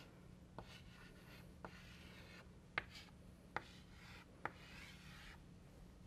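Chalk writing on a blackboard, quiet overall: about five sharp taps as the chalk strikes the board, between stretches of faint scratching as circles and letters are drawn.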